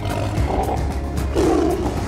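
A big cat roaring twice, each call about half a second long, the second louder, over a low music score.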